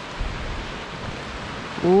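Wind buffeting the microphone over the steady wash of sea surf on rocks below the cliffs. A man's long, falling "ooh" starts right at the end.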